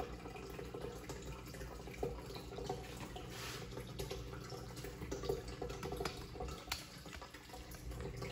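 Faint water trickling and dripping in a small turtle tank over a low steady hum, with a few light clicks scattered through.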